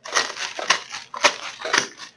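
A sealed packet of dry instant ramen noodles being crushed by hand: the brittle noodle block crunching and breaking up inside its crinkling plastic wrapper, in a run of short crunches, several a second.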